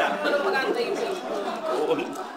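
Speech only: voices talking.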